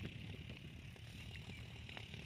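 Quiet open-air background: a faint, steady low rumble with no distinct sound events.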